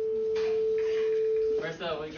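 A steady, pure electronic beep tone held for about a second and a half, then cutting off abruptly as voices come in.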